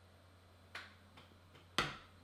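A beer glass set down on a coaster on the table, giving one sharp knock near the end. Two fainter clicks come in the second before it.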